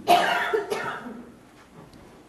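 A person coughing twice in quick succession, the first cough the louder.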